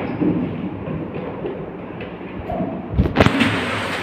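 Wooden school desks shifting and scraping on a hard floor as a person climbs between them, with a heavy thump about three seconds in.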